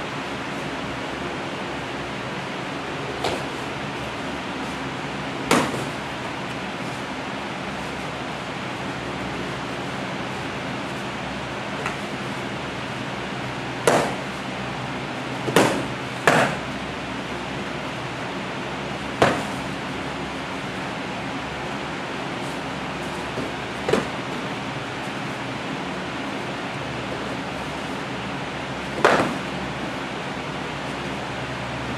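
Padded sparring sticks striking each other and the fighters in stick-fighting sparring: short, sharp hits at irregular intervals, a quick cluster of three in the middle and a loud one near the end, over a steady background hiss.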